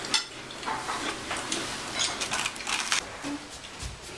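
Cutlery clinking and scraping on dinner plates, a scatter of light irregular taps, with a dull low bump near the end.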